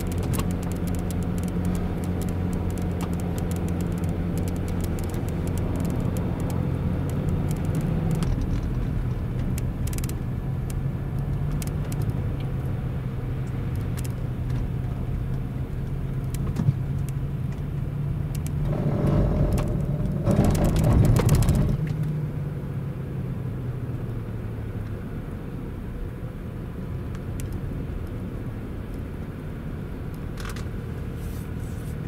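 Land Rover heard from inside the cabin, creeping down a snowy lane with its engine running steadily. From about two-thirds of the way in, a louder grinding buzz lasts about three seconds, typical of the ABS and hill descent control pulsing the brakes on snow.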